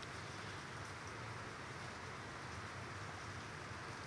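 Steady rain falling, heard as an even background hiss.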